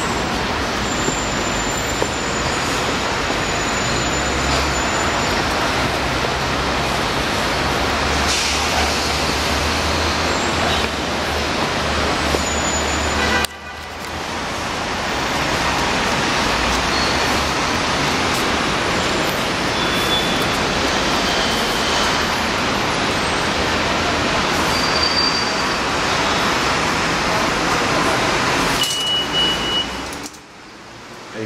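Dense city street traffic noise: a steady roar of passing vehicles, with a deeper engine rumble in the first half. The noise drops off suddenly about halfway through, then builds back up.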